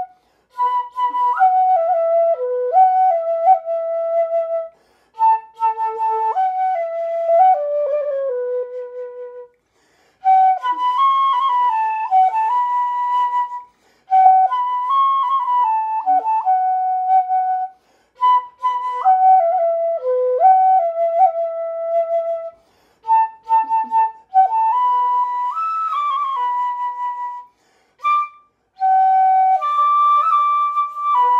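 Homemade side-blown flute made of PVC pipe playing a slow melody in phrases of a few seconds, with short breaks for breath between them and some notes sliding from one pitch to the next.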